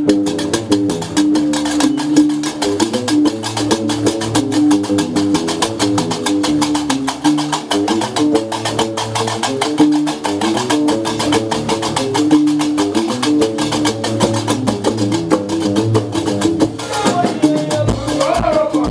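Live Gnawa music: a guembri plucks a repeating low bass riff under a fast, steady clatter of qraqeb metal castanets. A voice starts singing near the end.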